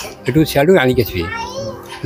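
A man speaking into the interview microphone in short phrases. A child's high voice sounds briefly in the background during the second second.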